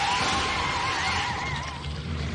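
An Insecticon's screech, a cartoon robot-insect cry: one warbling call whose pitch wavers up and down, fading out near the end.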